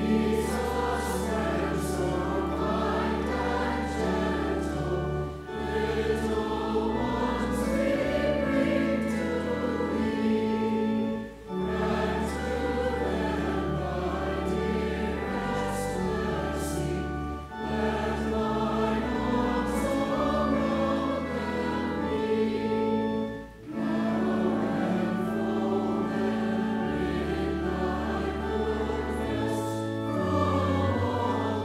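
Congregation singing a hymn with organ accompaniment, with short breaks between phrases about every six seconds.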